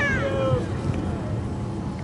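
A person's brief high-pitched shout in the first half second, falling in pitch, over a steady low rumble of wind on the microphone.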